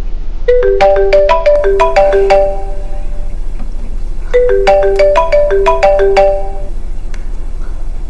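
Mobile phone ringtone: a short melody of quick notes played twice with a pause between. It is an incoming call, answered just after.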